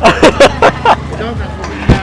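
Hearty laughter in quick bursts, followed by a man's speech over a background of crowd chatter. Near the end comes a single sharp metallic clank, the sound of a wok being set down on the stove burner.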